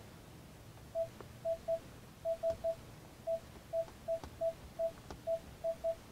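Key-press beeps from a 2021 Ford F-150's centre touchscreen as letters are typed on its on-screen keyboard: about fourteen short beeps, all at the same mid pitch, coming at an uneven typing pace.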